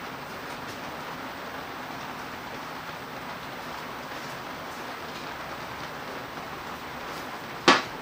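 Steady background hiss, even and unchanging, broken by one sharp click near the end.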